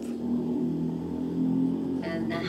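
A steady low hum made of a few held tones, with no speech over it.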